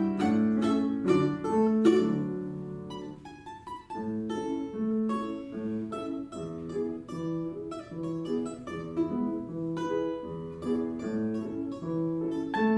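Balalaika played solo over piano accompaniment: a loud run of plucked notes dies away about three seconds in, then a quieter, lighter line of quick plucked notes follows.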